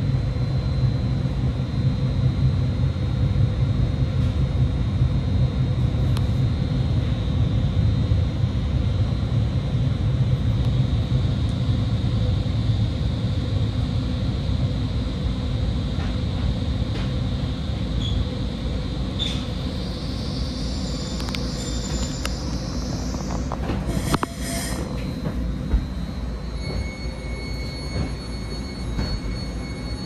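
Caltrain passenger train heard from inside a coach, its low running rumble easing as it brakes to a stop. A squeal rising in pitch sets in about two-thirds of the way through, followed by a few knocks, and then a steady high whine near the end.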